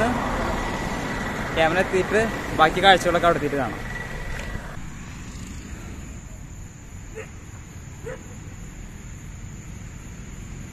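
Road traffic noise, with a vehicle engine running close by and men's voices over it. About halfway through it gives way suddenly to quiet night ambience with a steady high-pitched insect drone and a couple of faint clicks.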